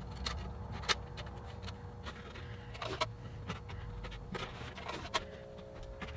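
Scattered light clicks and taps as strips of tape are pressed on to hold wooden binding around the edge of a guitar body, over a faint steady hum.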